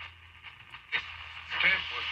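Shortwave broadcast through the speaker of a 1937 Zenith 5-S-127 tube radio being tuned between stations. The talk station drops out to faint hiss over a steady low hum, there is a click about a second in, then a voice from another station comes in near the end.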